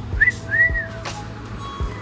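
A short two-note whistle, each note rising then falling in pitch, the second longer than the first, over steady background music.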